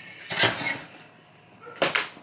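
Tool-handling noise on a workbench: a brief scraping rustle about half a second in as a soldering iron is put back toward its stand, then a single sharp tap near the end.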